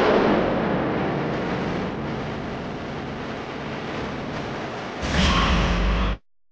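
Dramatic sound-effect hits: a loud booming whoosh that fades away over the first few seconds, then a second hit about five seconds in.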